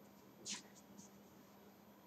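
Near silence, with one faint short scratch about half a second in and a couple of soft ticks after it: a whiteboard marker being handled.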